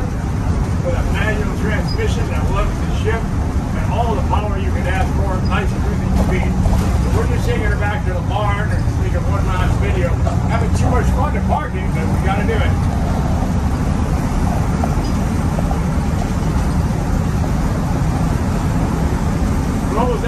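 Inside the cab of a 1983 Crown tandem bus: its Cummins 855 Big Cam inline-six diesel runs under way with a steady, loud low drone. The drone briefly dips just before the middle, then carries on.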